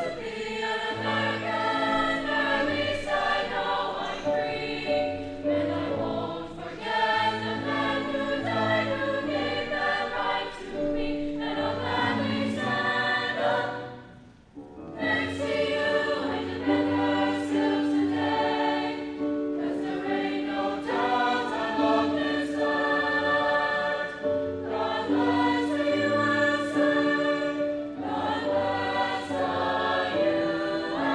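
A mixed choir of young men and women sings in harmony into microphones. The singing breaks off briefly about halfway through and then picks up with the next phrase.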